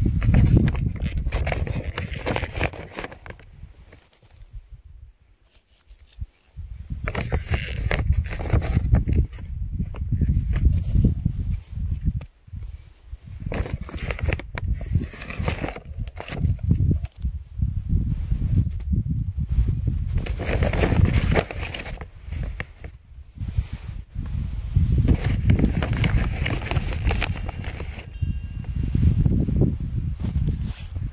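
Plastic scoop digging into partly frozen compost and lumps of it dropping onto loose soil: irregular bouts of crunching and rustling with scattered clicks, easing off for a moment around four to six seconds in.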